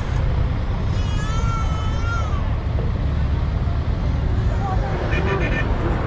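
Steady road-traffic rumble on a busy city bridge, with people's voices. About a second in, a high wavering call lasts over a second, and a short run of rapid high pulses comes near the end.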